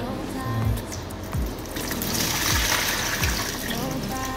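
Water from a plastic fish bag pouring through an aquarium net into a plastic bucket, a splashing pour for about a second and a half around the middle, over background music with a regular beat.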